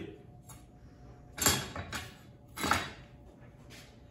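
Two short clanks of kitchenware on the counter, about a second and a half in and again about a second later, as a stainless-steel mixing bowl is set down and handled, with a few lighter ticks between.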